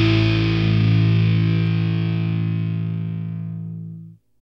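The final chord of a punk rock song: distorted electric guitars hold one sustained chord and let it ring out. It fades steadily, the top dying away first, until only the low notes remain near the end.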